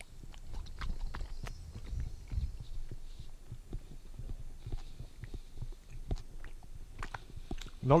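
Soft gummy lolly being chewed, picked up close by a headset microphone: irregular soft low thumps with small wet mouth clicks. A man starts speaking right at the end.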